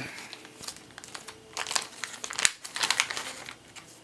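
Crinkly packaging being handled, giving irregular crinkles that come in two spells through the middle and later part.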